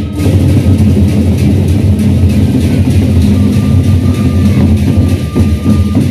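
Gendang beleq ensemble playing loudly: large Sasak drums with cymbals and gongs in a dense beat.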